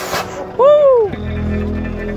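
A person gives a short, loud shouted call about half a second in, its pitch rising then falling. Right after it, the Hyundai Terracan's engine runs low and steady as the SUV crawls over the rock ledge.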